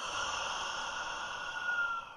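A man's long, steady breath, a sigh, close to a studio microphone, with a faint whistle running through it.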